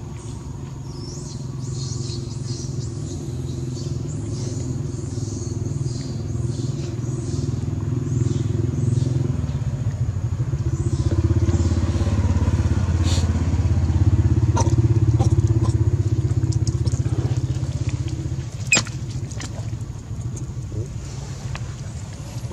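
An engine running steadily, growing louder toward the middle and easing off near the end, with one sharp click late on.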